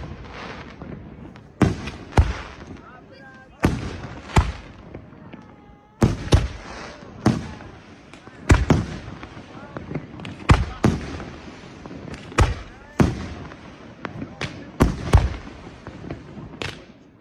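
Aerial firework shells bursting in quick succession, a sharp boom every half second to a second, with a haze of crackle and echo between the bursts.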